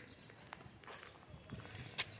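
Faint footsteps and scuffs on concrete, with a few light clicks and a sharper knock at the very end.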